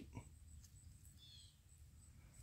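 Near silence: faint outdoor background, with one faint, high bird chirp a little over a second in.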